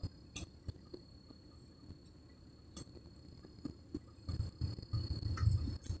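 Close-up eating sounds from a man chewing a breakfast of rice and fried food: scattered wet mouth clicks, then a run of louder low thumps in the last two seconds as he takes food from the table by hand. A faint, steady high-pitched whine sits underneath throughout.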